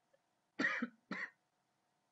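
A man coughs twice in quick succession, about half a second and a second in.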